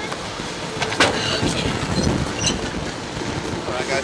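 A sharp mechanical knock about a second in, with a few lighter clicks and rattles, from a Slingshot ride's two-seat capsule as it settles at its loading platform at the end of the ride.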